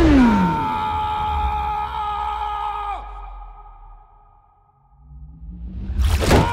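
Film sound design: a descending whoosh, then a held ringing tone that bends downward and drops away about three seconds in. It fades almost to quiet before a low tone rises near the end.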